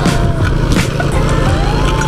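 Small motorcycle engine running steadily while riding over a rough, potholed road, with knocks from the bumps.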